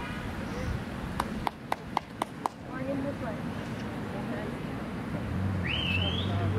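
A person clapping hands six times in quick, even succession, about four claps a second, over faint outdoor voices.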